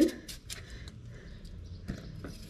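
A kitchen knife cutting through a peeled raw potato held in the hand: a few faint short cuts, the sharpest near the end.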